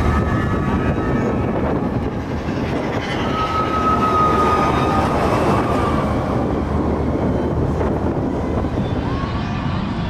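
Big Thunder Mountain mine-train roller coaster running on its track: a steady rumble, with a thin high wheel squeal coming and going about three to five seconds in.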